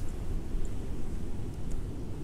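Wind buffeting a phone's microphone outdoors: a low, uneven rumble with faint hiss above it.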